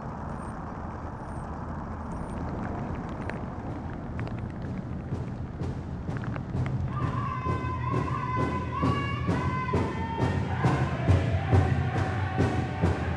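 Powwow drum struck by several drummers with sticks in a steady, even beat that fades in about four to five seconds in and grows louder, with high voices singing over it from about seven seconds in. Before the drum comes in there is a steady hiss.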